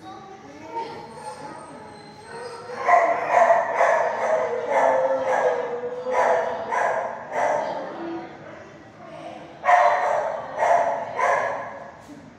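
Dog barking off-camera in an animal shelter kennel: a run of about ten barks at roughly two a second, then after a short pause three more near the end.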